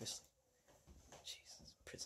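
Near silence broken by a few short, faint whispered sounds from a person's voice, about a second in and again near the end.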